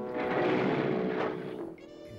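Motorcycle engine revving, swelling up and dying away within about a second and a half, over a held chord of the film's score.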